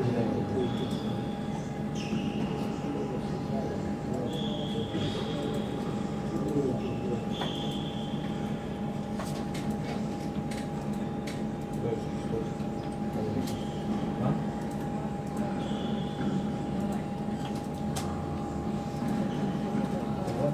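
Tennis rally on an indoor hard court: the ball is struck by rackets and bounces in sharp, irregular knocks, with short high shoe squeaks on the court surface. Under it runs a steady hum from the hall.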